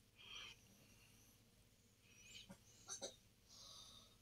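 Faint snips of fabric scissors trimming a collar's seam allowance: a few soft clicks and short rasps, close to silence.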